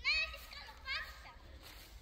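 A child's voice giving two short, high-pitched calls, one at the start and a shorter one about a second in.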